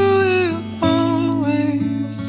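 Background song: a singer holds two long notes over acoustic guitar.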